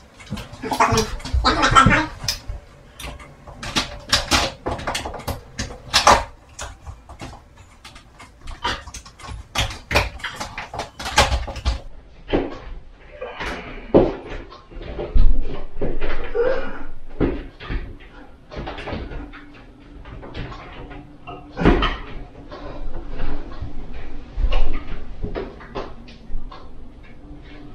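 Irregular knocks, taps and clicks of a motorized roller shade's headrail and its mounting brackets being handled and pushed into place against the top of a window frame.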